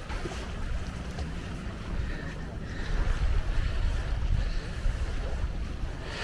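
Wind buffeting the camera microphone, a low rumble that grows stronger about halfway through.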